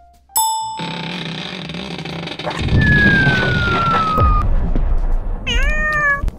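A bell-like ding, then music with a long falling whistle tone. Near the end a cat meows once.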